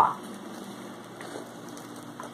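A short, sharp sound at the very start, then only faint steady background hiss: room noise.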